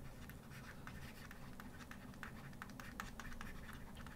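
Faint, irregular little taps and scratches of a stylus writing by hand on a tablet.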